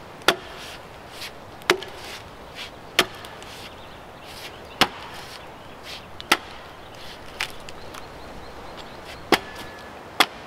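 Axe chopping into a log: about six sharp blows, mostly a second or two apart, with lighter knocks between them and a longer pause before the last blow near the end.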